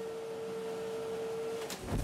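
Cotton candy machine whirring: a steady motor hum with one held tone as the spinner head turns. The tone stops near the end and gives way to a short low whoosh.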